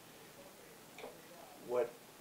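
Quiet room tone in a small meeting room during a pause in talk, with one short faint sound about a second in; a man's spoken word cuts in near the end.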